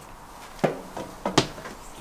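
Footsteps and knocks as a person climbs the entry steps into a travel trailer: three short sharp thumps, a little under half a second apart.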